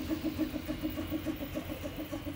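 Original Prusa i3 3D printer printing a curved part: its stepper motors hum and whine in an even pulse several times a second as the print head shuttles back and forth over the bed.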